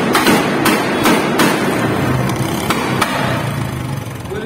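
Motorcycle engine running with a string of sharp, firecracker-like bangs from the exhaust, several in the first second and a half and two more about three seconds in, over a steady low engine drone.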